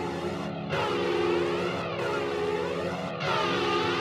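Sustained droning chord with a sweeping flanger-like effect, the sweep restarting about every 1.3 seconds: the slow intro of a grindcore demo track, before the band comes in.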